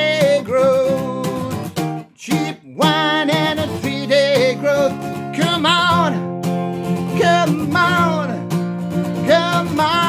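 A man singing long, wavering notes without clear words over a strummed acoustic guitar, with a brief break about two seconds in.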